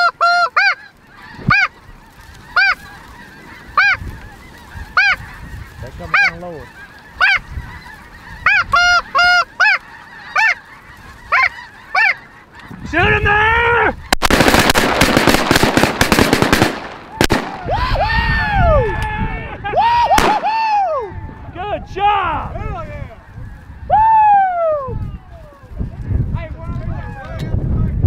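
A large flock of snow geese calling overhead: short, high honks repeat about once a second. About halfway through comes a few seconds of loud, dense noise with sharp cracks, and then more honks that fall in pitch.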